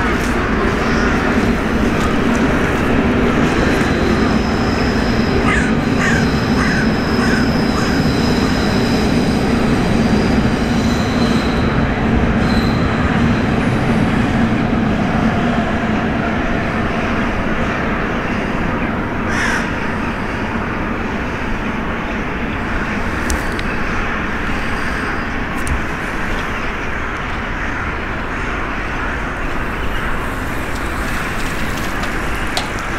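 Crows and rooks calling as a flock flies off from the roost, set against a loud, steady city rumble with a low hum. A high, thin whine runs from about 4 to 13 seconds in.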